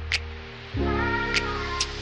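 Background music: sustained chords over a steady bass, changing chord a little under a second in, with a few sharp percussion hits.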